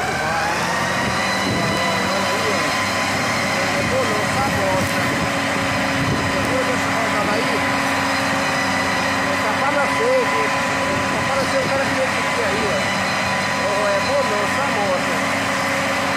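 Valtra tractor's diesel engine working under load with a loaded sugarcane trailer. It climbs in pitch over the first second, then holds at steady revs with a high whine over the engine note.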